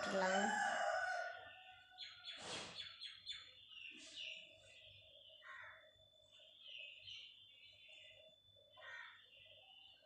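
Birds chirping, with a louder pitched call in the first second and a half.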